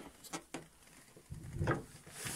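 Faint handling noises: a couple of light clicks early on, then a short rustle about halfway through.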